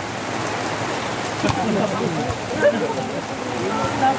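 Steady rain falling on a puddled outdoor court, a constant even hiss.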